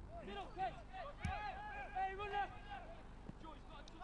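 Faint shouts and calls from players on a football pitch, with one dull thud a little over a second in.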